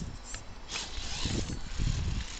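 Axial XR10 radio-controlled rock crawler's electric drivetrain working in short raspy bursts as it crawls over rocks, with low thumps in the second half.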